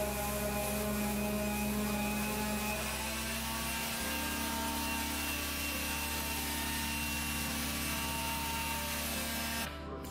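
Corded electric orbital sander running steadily against a painted door, a smooth even motor sound. Its tone shifts slightly about four seconds in.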